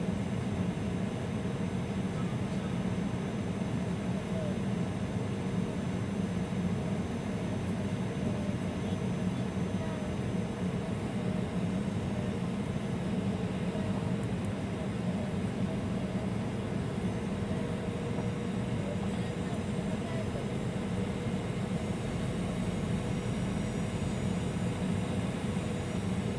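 Jet airliner cabin noise in flight: a steady, even hum of engines and airflow heard from inside the cabin, with a faint steady whine over it.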